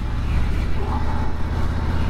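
Harley-Davidson Street Glide Standard's V-twin engine running as the bike rides along, a steady low rumble with road noise over it.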